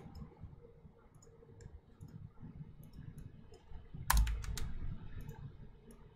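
Computer mouse and keyboard clicks at a desk: faint scattered ticks, then a cluster of louder clicks with a dull thud about four seconds in.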